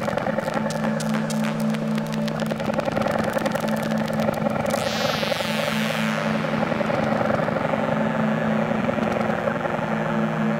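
Live hardware synthesizer drone: a steady low tone held under a layer of rapid crackling clicks for the first half, then about five seconds in a high sweep glides down in pitch as the knobs are turned.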